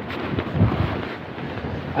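Strong, gusty wind rushing across the microphone, with small swells in the gusts.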